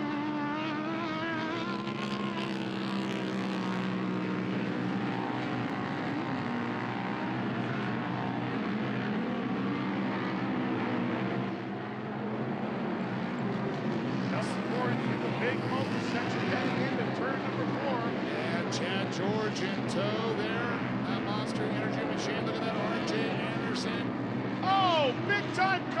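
UTV race engines running hard on a dirt track, the revs rising and falling as the side-by-sides race by, with the sharpest revving near the end.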